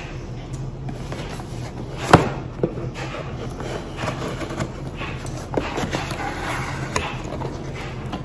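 Cardboard mailer box being cut open with scissors and handled: a sharp click about two seconds in, the loudest sound, then scraping and rustling of cardboard with a few lighter clicks as the lid is worked open. A clothes dryer hums steadily underneath.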